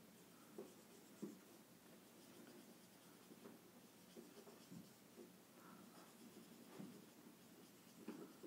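Faint felt-tip marker strokes on a whiteboard: short scattered scratches and taps as small coiled springs are drawn one after another.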